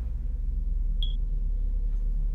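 A single short, high electronic beep about a second in, over a steady low hum.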